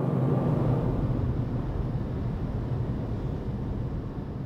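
Steady low rumble of road and engine noise inside a moving car's cabin, easing slightly toward the end.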